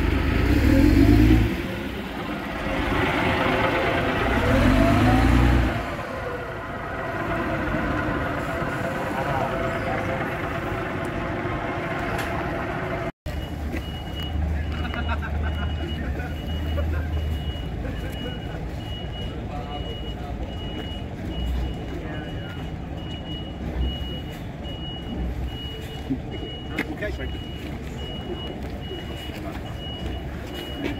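Double-decker bus diesel engine running as the bus moves past close by, loudest in the first six seconds. After a cut, a reversing alarm beeps repeatedly at a high pitch over the low running of bus engines.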